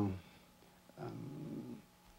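A man's hesitant voice: the tail of an 'um', then about a second in a low, rough, creaky 'uhh' as he searches for a word.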